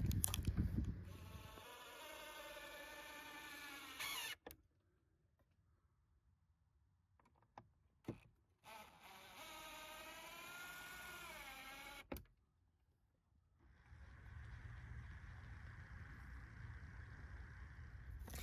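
Cordless drill/driver driving two-inch star-head screws through a cedar shutter board into the house wall. There are two runs of a few seconds each, separated by a pause, and the motor whine wavers and drops in pitch as the screw takes load. A steady, duller hum follows near the end.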